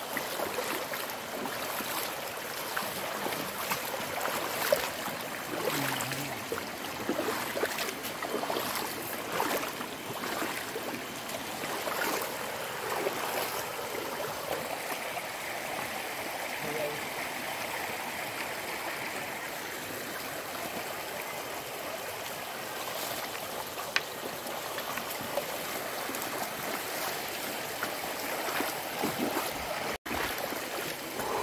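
Shallow stream running over stones: a steady rush and trickle of water, with occasional short knocks.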